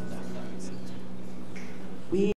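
A soft held keyboard chord dying away in a hall, under the murmur of audience voices, with a few sharp clicks.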